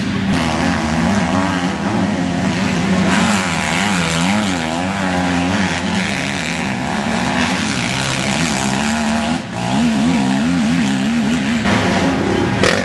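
Motocross bike engines racing on a dirt track, revving up and dropping back repeatedly as they run through the gears, with a short dip about nine and a half seconds in.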